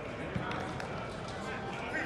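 Indistinct voices talking in the background, with one sharp thud about a third of a second in and another right at the end.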